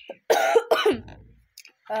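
A young boy coughing: a short run of quick coughs in the first second.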